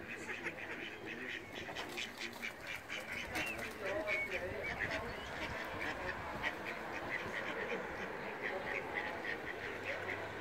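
Mallard ducks calling: a steady stream of short, high peeps from a brood of ducklings swimming with their mother.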